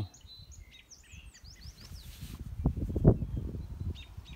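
Birds chirping in short, quick gliding calls. Later comes a run of low thumps and rumble, loudest about three seconds in.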